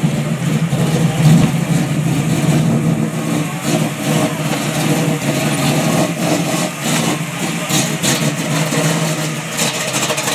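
Chevy II Nova's engine running at a steady low idle as the car creeps past at walking pace; it sounds healthy.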